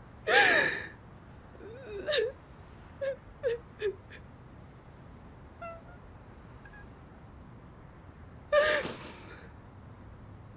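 A woman crying: a loud gasping sob about half a second in, more sobs around two seconds, then three short whimpers in quick succession, and another loud gasping sob near the end.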